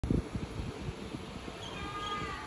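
Wind buffeting the phone's microphone in irregular low rumbles, with faint thin high tones coming in near the end.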